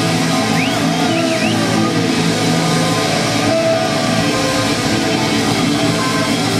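A live blues-rock band playing without vocals: lead electric guitar on a Stratocaster-style guitar through a Marshall amplifier, with bass and drums. Several notes slide up and down in pitch in the first two seconds.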